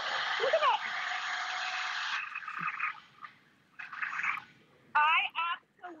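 Shark stick vacuum, used handheld, running with its nozzle on a rubber car floor mat and sucking up loose grit. The running sound stops about two seconds in and tails away, with a second brief burst of suction about four seconds in.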